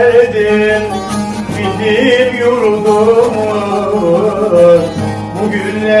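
Bağlamas (long-necked Turkish saz) played together on a folk-song melody, over a steady low drone of open strings.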